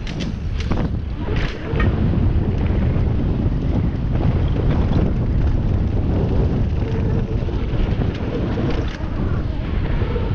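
Wind buffeting a helmet-mounted camera's microphone, with the rumble of a mountain bike's tyres on a fast dirt and gravel descent. Sharp knocks and rattles come in the first two seconds as the bike runs over a wooden ramp.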